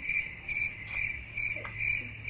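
High, evenly repeated chirps, about three a second, like a cricket's, over a faint steady low hum.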